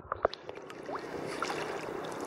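Small sea waves lapping and splashing around a camera held at the water surface, with scattered short water clicks and drips.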